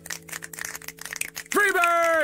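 An audience snapping their fingers in quick, scattered clicks, in appreciation of a poetry reading. About a second and a half in, a loud cheer comes in and falls in pitch.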